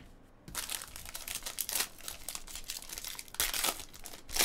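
Foil wrapper of a trading-card pack crinkling and tearing as it is pulled open by hand. It starts about half a second in and is loudest near the end.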